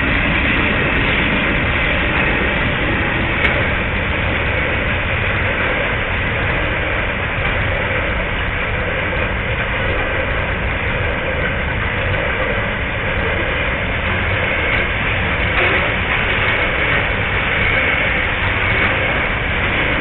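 Freight train passing: TasRail TR-class diesel-electric locomotives and then a long line of container wagons rolling by, a steady low rumble throughout.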